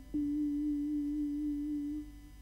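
A single vibraphone note, struck just after the start and left ringing as a pure, steady tone for about two seconds.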